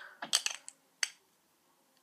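Small plastic eyeshadow pot being handled and turned in the fingers: a quick run of light clicks and taps, then one more about a second in.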